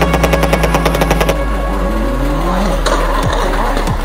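Ford Fiesta rally car engine stuttering in rapid pops, about eleven a second for just over a second, as it bounces off the rev limiter. It then revs up and down, over a steady low musical drone.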